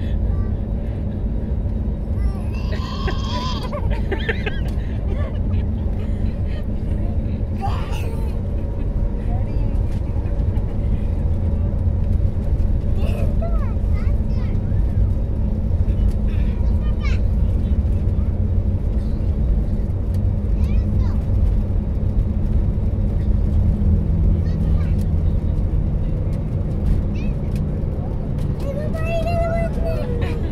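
Airliner cabin noise: a steady low rumble and hum from the jet engines and air system, growing slightly louder about halfway through.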